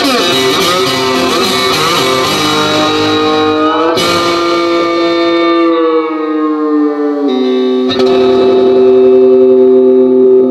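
Homemade banjo-style string instrument, amplified and played through effects pedals: plucked notes ring out, then slide down in pitch in the middle. A string is struck again near the end and left to ring as a long held tone.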